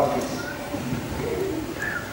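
Soft, indistinct children's voices murmuring in a large hall, with a couple of brief high-pitched vocal sounds.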